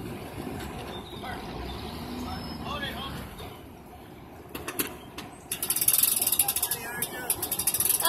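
Boat trailer's hand winch being cranked, its ratchet pawl clicking rapidly from about halfway through. Before that, faint voices in the background.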